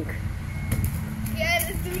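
Low rumbling noise on a handheld phone's microphone outdoors, with a brief voice fragment about one and a half seconds in.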